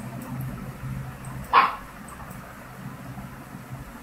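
A dog barks once, a short sharp bark about a second and a half in, over a low steady hum.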